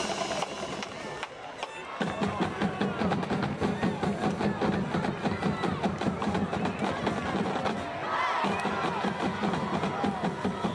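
Marching band drums playing a quick, steady beat with crowd voices over it; the drumming comes in about two seconds in.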